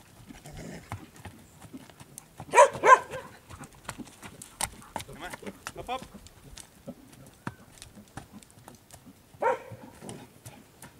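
Horse trotting on dirt in a round pen, its hooves making irregular short thuds and clicks throughout. Two short, loud voice calls come about two and a half seconds in, and another just before the end.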